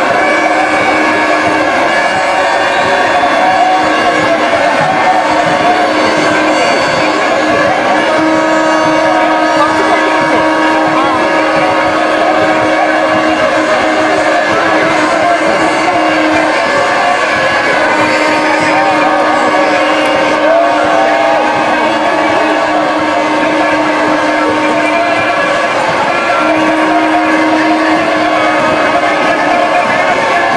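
Constant loud hubbub of many voices over a steady droning tone that drops out and comes back several times.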